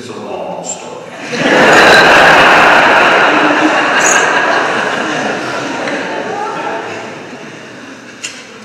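A congregation laughing together: the laughter swells about a second in and slowly dies away over several seconds.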